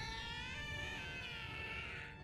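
Anime character's long, high wailing cry, held and wavering slightly, fading out near the end: the scream of a giant woman in the grip of a craving fit.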